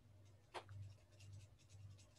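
Near silence: a faint steady low hum with a sharp click about half a second in, then a scatter of soft ticks.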